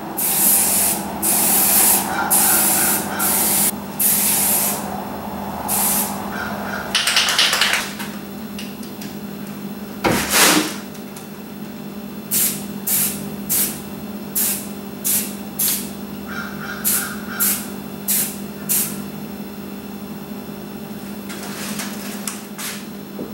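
Aerosol spray-paint can spraying black paint onto car trim in several long bursts over the first part, then about ten short, quick puffs later on. A brief louder noise comes about halfway through.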